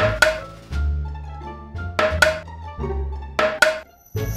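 Cartoon background music with held bass notes, over which come three pairs of sharp wooden knocks, each pair two quick taps, from a hammer knocking pieces of a wooden flower stand together.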